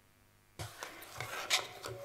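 Rustling, rubbing and a few light knocks of handling noise on a conference microphone that is switched on about half a second in, just before the speaker begins.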